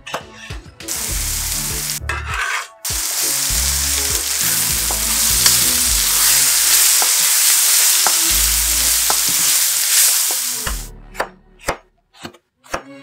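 Carrot, bell pepper and mushroom strips sizzling loudly as they are stir-fried over high heat in a wok with a wooden spatula, with a brief break a couple of seconds in. At the start and again near the end, a knife slicing bell pepper on a cutting board makes sharp separate chops.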